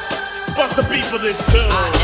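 Euro rave dance track with a rapped vocal over synths. A heavy kick drum and bass come in about one and a half seconds in.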